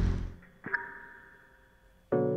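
A short, soft electronic chime: a light click, then a few steady tones that ring out and fade over about a second.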